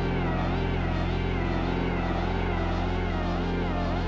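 Dreadbox Abyss analog synthesizer playing a sustained low drone, its upper tones wobbling up and down in pitch a few times a second.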